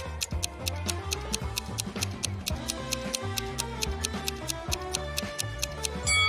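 Background music with a quick, even clock-like ticking over it: a countdown timer sound effect marking time for the answer.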